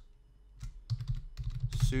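Typing on a computer keyboard: a quick run of keystroke clicks beginning about half a second in, as a word is deleted and another typed.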